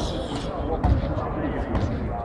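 Indistinct voices in a large sports hall, with one dull low thump a little under a second in.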